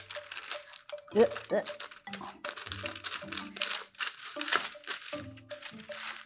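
Parchment paper crinkling and rustling as a wooden rolling pin rolls dough between two sheets, in many short crackles, over background music.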